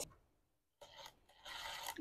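Faint dry rasping rub as a stiff-bristled drill brush is handled and seated on a cordless impact driver's bit: a brief scrape about a second in, then a longer rub near the end.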